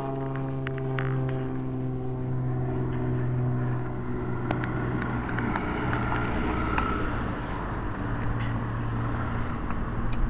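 A car engine running steadily close by, a low even hum, with a few light clicks.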